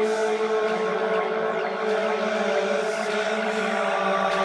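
Downtempo electronic music: sustained synthesizer chords and drones held steady, with faint sweeping whooshes over them.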